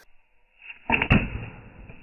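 A sudden impact into a pan of crushed ice about a second in, throwing ice chunks out, with a short rush just before it and a rumble that dies away after.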